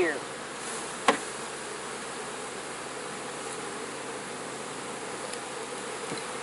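A swarm of honey bees buzzing in a steady, even hum, stirred up after being shaken off their frames into a mating nuc. One sharp knock cuts through about a second in.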